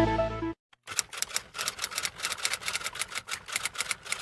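Electronic background music stops about half a second in. After a brief pause comes a fast, uneven run of sharp clicks, several a second, like keys being typed.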